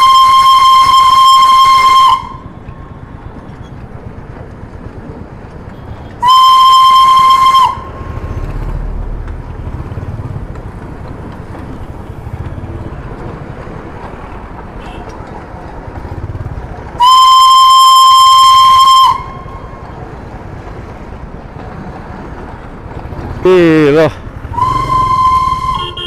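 Steam whistle of the Darjeeling Himalayan Railway locomotive sounding in four long, steady, single-pitch blasts: the first is already sounding and stops about two seconds in, the next comes about six seconds in, a third of about two seconds comes at the middle, and a short one comes near the end. Between the blasts, a motorcycle engine and street traffic run steadily underneath.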